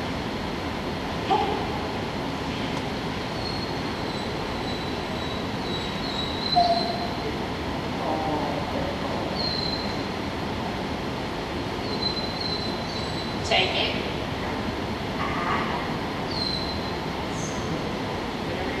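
Steady rushing background noise, with a few short high squeaks scattered through it and some brief faint sounds.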